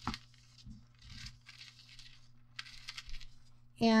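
Scissors cutting through a thin sheet of gold deco foil, the foil crinkling, in three short bouts of faint rustling after a small click at the start.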